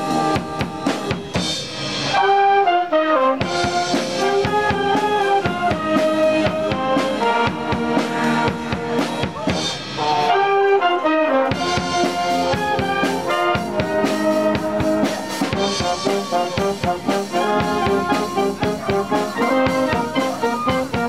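Youth wind band playing live: clarinets, flutes, saxophones and brass carry a melody over a drum kit keeping the beat.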